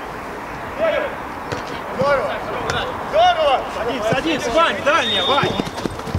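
Players' voices shouting short calls to each other during play, starting about a second in, over a steady outdoor background hum.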